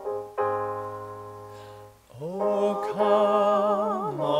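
Piano playing struck, slowly fading chords; about two seconds in, a solo voice begins singing with vibrato over the piano accompaniment.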